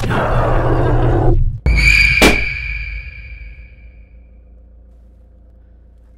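Horror-film sound effects: a harsh screech over a low rumble for about a second and a half, cut off by a deep boom, then a sharp hit whose high ringing tone fades away over about two seconds.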